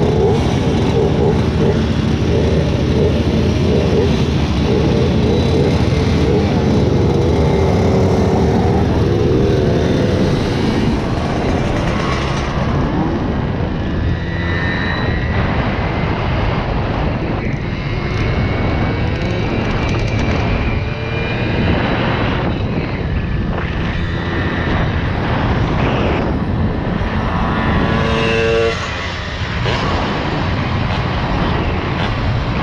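Several Simson 50 cc single-cylinder two-stroke moped engines idle and blip their throttles together at a stop, their buzzing pitches wavering. Then one Simson moped runs along at speed, its engine pitch rising through the gears.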